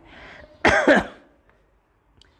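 A man clearing his throat once: a short, loud rasp about half a second in, after a soft breath.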